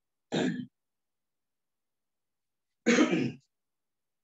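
A man clearing his throat twice: a short clear-out just after the start, then a louder, longer one about three seconds in.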